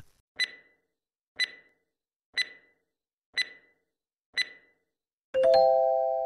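Quiz countdown sound effect: five short ticks, one a second, giving time to answer, then a bright chime of several held tones near the end that marks the reveal of the answer.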